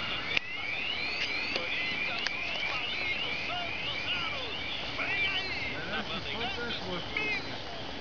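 A bird calling a quick run of short rising chirps, about three a second, over the first few seconds, with faint voices in the background.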